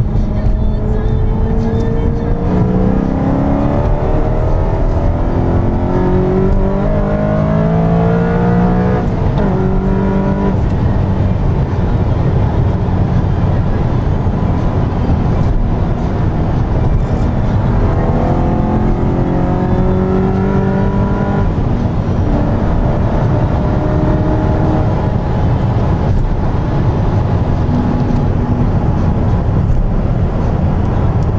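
Car engine heard from inside the cabin, accelerating hard: its pitch climbs twice, each climb ending in a sudden drop, about a third of the way in and again past two-thirds, over steady road and wind noise.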